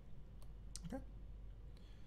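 Two short, sharp clicks about a third of a second apart, then a quietly spoken "okay" and a fainter click near the end: the clicks of a stylus tapping on a pen tablet.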